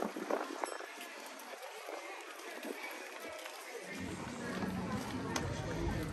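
Background chatter of people at outdoor café tables and passers-by. A low rumble comes in about two-thirds of the way through and gets louder.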